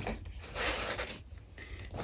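A deck of oracle cards being slid out and spread across a table: a soft sliding rustle of card on card, with a few light clicks.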